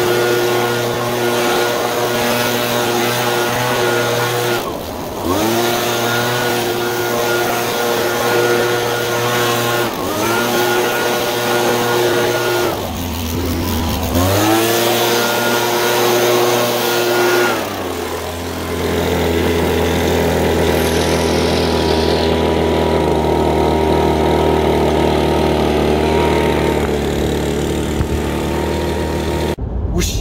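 Small two-stroke handheld leaf blower running at full throttle, easing off and coming back up several times, then running steadily at a lower speed for the last ten seconds or so.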